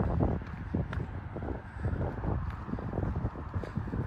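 Footsteps on concrete pavement at a walking pace, about two a second, with wind rumbling on the microphone.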